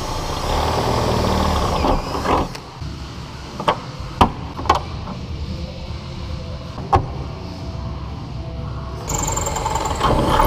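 Cordless drill running as it bores a hole through a fibreglass spoiler for about two seconds, then four sharp snaps from a hand pop-rivet gun setting rivets, and the drill starting up again near the end.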